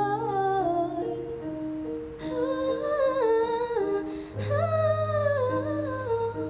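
A woman humming a slow wordless melody in two phrases over sustained electric keyboard notes.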